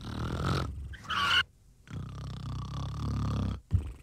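Cartoon snoring: low, drawn-out snores, a long one in the second half after a short pause, followed by a sharp knock near the end.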